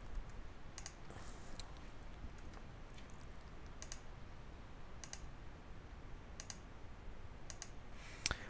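Faint computer mouse clicks, each a quick press-and-release, scattered about one every second or two as anchor points are placed with Illustrator's pen tool. A low steady hum lies under them.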